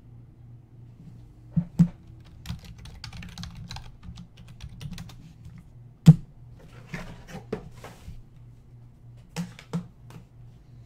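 Computer keyboard typing in short bursts of clicks, with sharper knocks from hard plastic card cases being handled on the desk; the loudest knock comes about six seconds in. A faint steady hum runs underneath.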